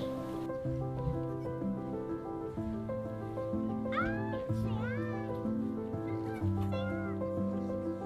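Newborn goat kids bleating a few short, thin, rising-and-falling cries, the first about four seconds in and more near the end, over background music of slow held chords.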